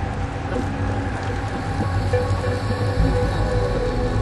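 Dark ambient horror score: a steady low rumbling drone with a few held tones over it.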